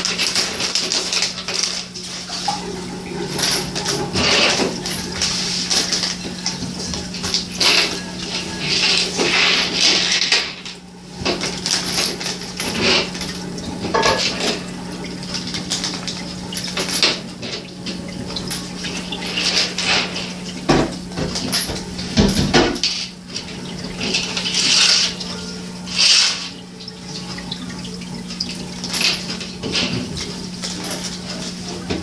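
Small metal Meccano parts (nuts, bolts and pieces) clinking and rattling as they are handled in a clear plastic bag and dropped into a plastic parts tray, with the bag crinkling. It comes in irregular bursts over a steady low hum.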